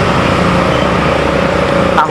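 Steady road traffic noise with the continuous hum of a running motor vehicle engine.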